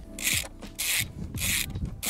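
Socket ratchet with a 19 mm socket ratcheting in four short bursts, about one every half second, as a bolt is wound out by hand.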